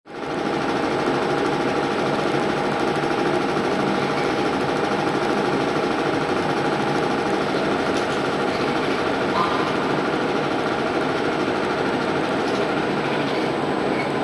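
A steady, fast mechanical rattle that fades in quickly at the start and then runs on evenly.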